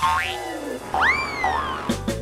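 Cartoon sound effects over a low, steady music bed: a quick rising whistle-like glide, then a falling one, and about a second in a longer sliding tone that leaps up and glides slowly back down.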